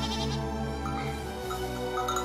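A lamb bleats once, briefly and wavering, at the start, over soft background music.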